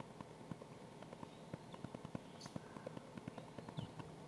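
Faint room tone with soft, irregular small clicks, several a second.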